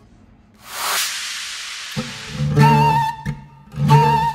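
A brief rushing hiss, then an oud and a Turkish ney start a tune in maqam Hüseyni. Low plucked oud notes come in about halfway through, and the ney joins with a held, wavering note.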